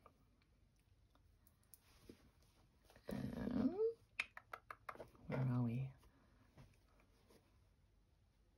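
Two short wordless vocal sounds from a woman, the first gliding up in pitch and the second a low held hum, with a few light clicks from handling fabric in between.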